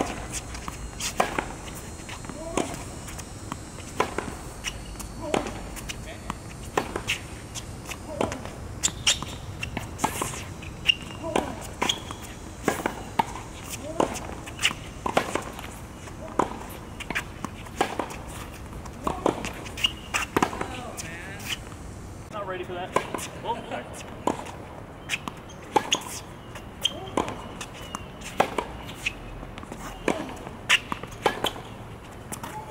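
Tennis rally on a hard court: a steady run of sharp pops from balls struck off racket strings and bouncing on the court surface, roughly one a second.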